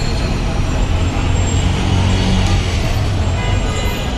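Busy street traffic noise: a steady din of motor vehicles, with a low engine hum that swells about a second in and eases near the end.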